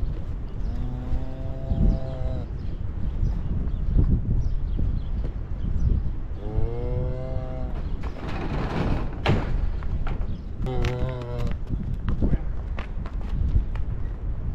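Cattle bawling three times, each call about one to two seconds long and the middle one rising and falling in pitch, over a steady low rumble.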